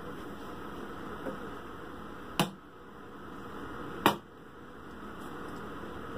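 Steady hiss of room noise, broken by two sharp clicks, the first about two and a half seconds in and the second about a second and a half later.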